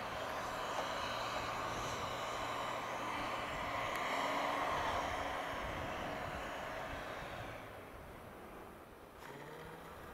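Cummins diesel Ram 2500 pickup climbing a snowy hill under power, engine running hard and tyres spinning and throwing snow, loudest about halfway through. It fades away from about three-quarters of the way in as the truck pulls off up the trail.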